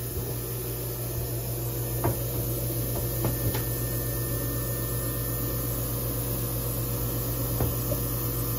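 Steady low machine hum with a faint steady tone above it. A few light knocks come about two, three and a half and seven and a half seconds in.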